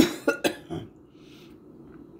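A person coughing, four quick coughs in the first second, the first the loudest.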